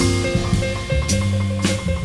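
Jazz piano trio playing: piano over a held bass line, with drum kit and cymbal strikes at the start and again near the end.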